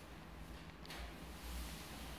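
Faint wiping of a wet brush pad spreading finish over wooden floorboards, with one brief brighter swish just under a second in, over a low steady hum.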